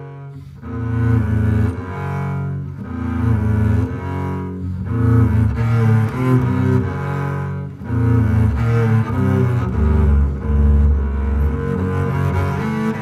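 Solo double bass played with the bow: phrases of bowed notes with a brief break right at the start, and a long, strong low note near the end.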